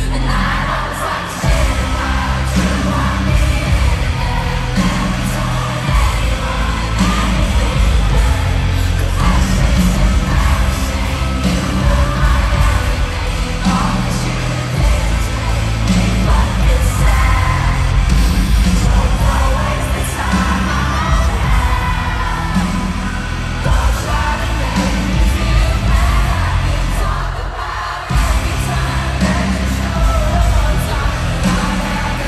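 Live pop concert music with heavy bass and a sung vocal, played loud over an arena PA, with the crowd yelling along. It dips briefly near the end, then comes back in full.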